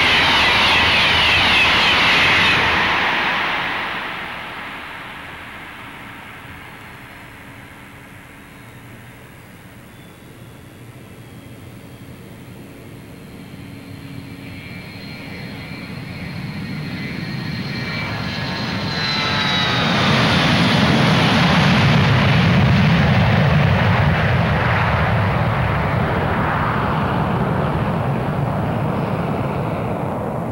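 A fast train passing through a station: a loud rush at the start that fades within a few seconds, then another pass-by that builds to a loud rush, with a thin whine dropping in pitch just before the peak.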